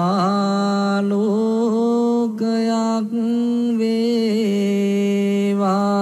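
A single voice chanting in long held notes, with small turns in pitch between them and two brief breaks near the middle, typical of Buddhist devotional chanting.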